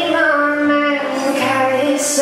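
A woman singing with acoustic guitar accompaniment, holding long notes that change pitch every half second or so.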